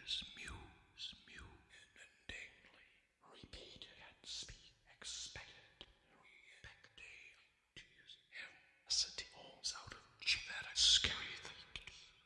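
A baritone's computer-processed voice, heard as broken-up whispered fragments: short hissy bursts with silences between them, a few sliding in pitch, growing louder and denser about three-quarters of the way through.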